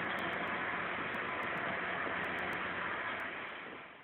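Steady city street ambience: an even, hiss-like din with a faint hum, fading away near the end.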